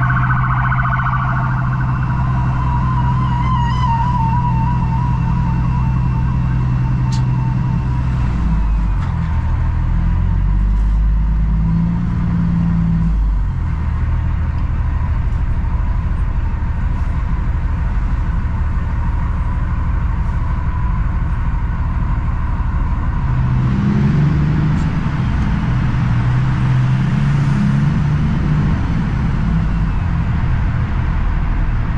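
Diesel engine of a heavily loaded Kenworth W900L semi truck running as it drives, heard from inside the cab over road noise. The engine note shifts in pitch around ten seconds in and again near the end. A thin warbling tone sounds over it for the first several seconds.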